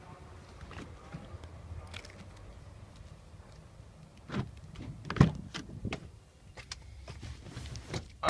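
Pickup truck rear door being opened: a click from the handle and latch about four seconds in, a loud clunk a second later, then a few lighter knocks.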